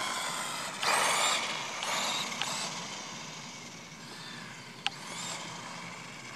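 Small electric RC truggy driving off across asphalt: a high motor whine and tyre hiss surge about a second in, then fade as it moves away. A single sharp click comes near the end.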